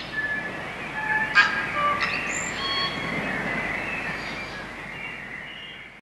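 Birdsong: scattered short whistled notes at different pitches, with one sharp click about a second and a half in, fading away toward the end.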